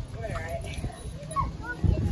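Children's voices calling out while bouncing on a trampoline, over the dull thuds of feet landing on the mat; the thuds grow louder near the end.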